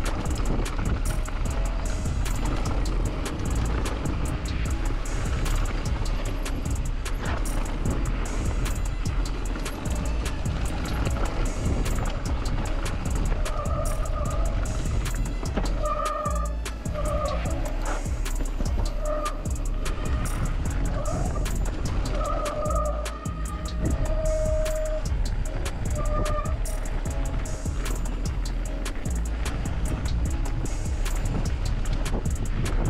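Downhill mountain bike running fast down a trail: steady wind rush and tyre and frame rumble. Short squealing tones come and go through the second half.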